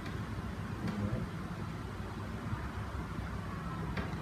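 Steady low rumble of classroom background noise, with no speech and no distinct events.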